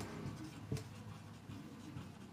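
Faint scratching and tapping of a marker pen writing on a whiteboard, in short strokes.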